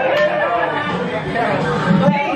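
Several people talking at once in a room, their voices overlapping into steady chatter.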